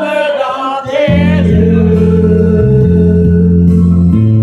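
Karaoke: a man singing into a microphone over a backing track. His sung line ends about a second in, and the accompaniment carries on alone with sustained bass notes and chords.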